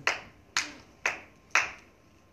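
Four sharp claps, evenly spaced about half a second apart, each trailing off in a short echo.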